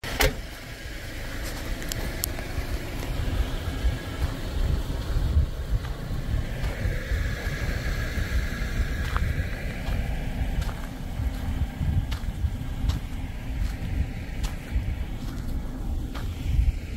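Wind buffeting a handheld phone's microphone outdoors: an uneven low rumble throughout, with a few scattered sharp clicks.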